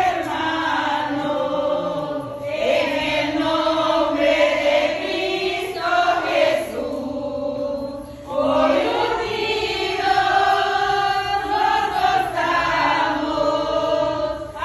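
A small group of voices, mostly women's, singing a song together unaccompanied-sounding in long held phrases, with short breaks between lines.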